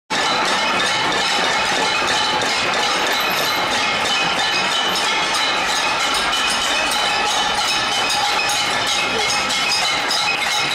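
A protest crowd banging pots and pans (a cacerolazo): a dense, continuous clatter of many metal strikes with a steady metallic ringing over it.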